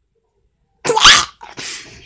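A person's sudden, loud breathy outburst about a second in, followed at once by a second, softer breathy burst.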